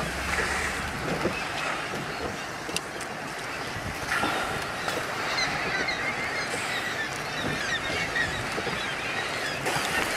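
Walruses swimming and splashing in the sea at close range, water churning, with short honking calls.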